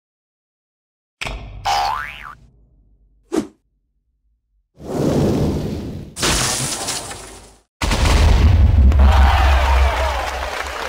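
Sound effects for an animated countdown intro, coming one after another with short silences between. There is a springy rising-and-falling pitch glide just over a second in and a brief hit, then two longer noisy bursts. From about eight seconds a loud, deep rumble takes over.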